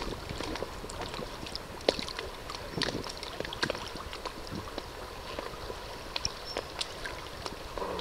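Small water sounds around a canoe drifting along the shore: water lapping and trickling against the hull, with scattered light clicks and knocks.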